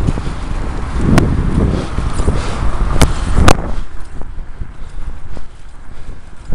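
Wind buffeting the camera's microphone on a moving bicycle: a loud, uneven low rumble that comes and goes, with a few sharp knocks, the strongest about three and a half seconds in.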